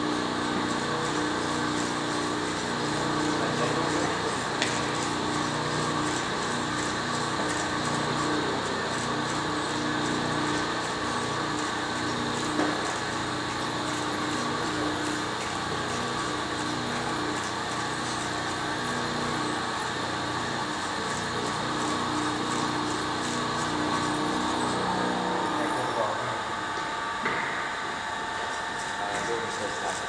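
Steady mechanical hum with several whining tones held throughout. Near the end the lower tones drop away and a higher whine comes in.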